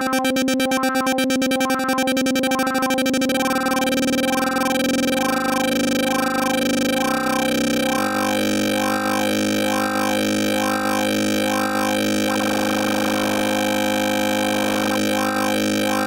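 A VCV Rack software modular synthesizer patch playing a sustained electronic drone, with a pulse repeating a little faster than once a second. About halfway through, the bass note drops lower, and a grainier, noisy layer comes in later on.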